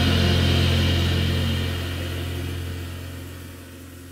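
A band's last low held note ringing out under a hiss of cymbal wash, both fading steadily away as the song ends.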